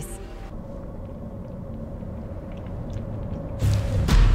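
Ominous score from the episode's soundtrack: a low rumbling drone under one held tone, swelling into a loud, deep hit near the end.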